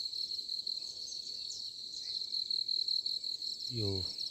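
Steady, high-pitched chorus of insects chirring, with a faster pulsing layer above it. A voice starts near the end.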